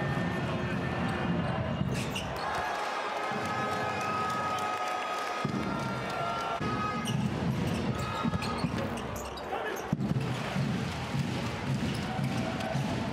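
Basketball game sound in an arena: a ball bouncing on the hardwood court with sharp knocks now and then, over steady crowd noise and voices in the hall.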